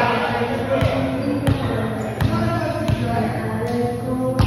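A ball bouncing repeatedly on a hard concrete court floor, one bounce about every 0.7 s, echoing in a large hall, with voices going on behind it.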